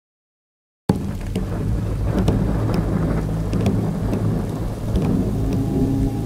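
A low, steady rumble with scattered crackles, starting suddenly about a second in after silence.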